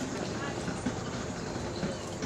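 Indistinct voices of people talking in the background over a steady wash of outdoor noise.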